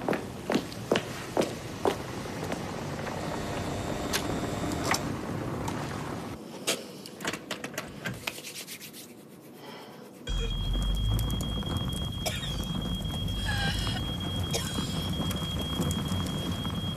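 Quick footsteps of shoes on pavement, about two a second, at the start. About ten seconds in, a room fire starts up suddenly: a steady low rumble of burning with wood crackling and a thin steady high-pitched tone over it.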